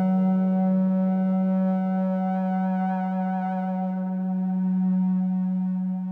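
Dave Smith Instruments Tetra analog synthesizer holding one long, steady note with a rich stack of overtones and a little added reverb, the note dying away at the very end.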